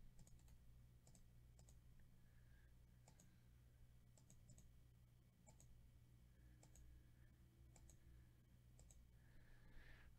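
Faint computer mouse clicks, about one a second and often in quick pairs, over a low steady hum.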